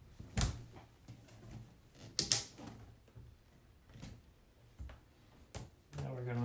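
Plastic drinker cups snapping onto the plastic grid wall of a partridge cage: a handful of sharp clicks, the loudest a quick double click about two seconds in.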